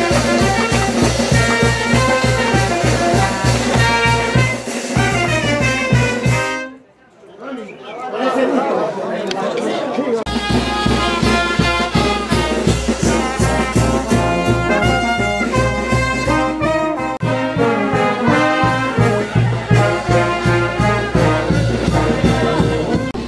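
Street brass band of trumpets, trombones and saxophone playing over a steady beat. The music drops away about six and a half seconds in and starts up again about three seconds later.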